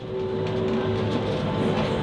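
Cable car cabin running through its station: a steady mechanical rumble and clatter with a held whine.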